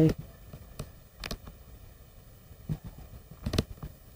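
The end of a spoken "bye", then low room noise with a few faint clicks and knocks of the camera being handled, the loudest about three and a half seconds in as it is picked up.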